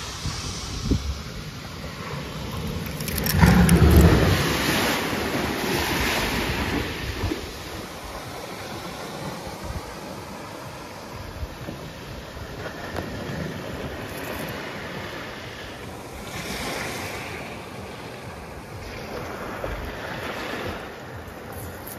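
Surf washing onto a pebble beach, with wind rumbling on the microphone. The loudest surge comes about three to five seconds in, and a smaller one near the end.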